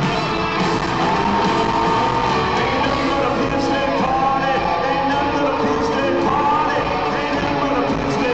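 Live country-rock band and sung vocal playing through an arena sound system, heard from the stands, with yells and whoops from the crowd over the music.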